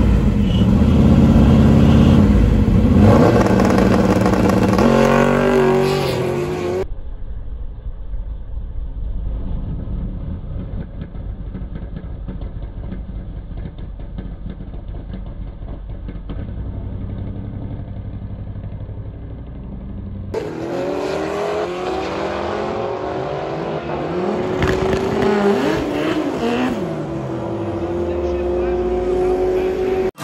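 Ford Fairlane drag car's engine revving hard at the start line, then running more steadily after a sudden change in sound about seven seconds in. From about twenty seconds in, the engine pulls hard with its pitch climbing steadily as the car launches down the drag strip.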